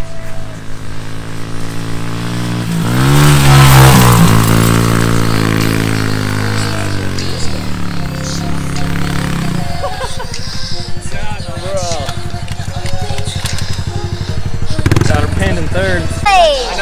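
A Honda CRF110 pit bike's small single-cylinder four-stroke engine riding through soft sand. It revs up about three seconds in, is loudest around four seconds, then holds and eases off. After about ten seconds it drops to a lower, even putter.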